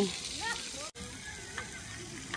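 Steady outdoor background hiss with faint distant voices, broken by a brief gap in the sound about a second in.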